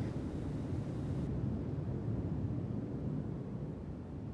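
Steady low rumble of background noise with a faint hiss above it. The hiss drops away about a second in, and the rumble eases slightly toward the end.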